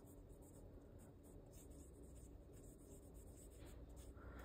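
Faint scratching of a fountain pen nib writing by hand on journal paper.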